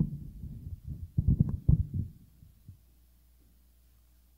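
Microphone handling noise: dull thumps and rubbing as a handheld microphone is gripped and moved in its stand clip, a sharp bump at the start and a second cluster of knocks about a second in, then quiet.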